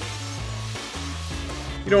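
Water from a kitchen faucet running into a Dutch oven, a steady hiss that stops shortly before the end. Background music with a low bass line plays under it.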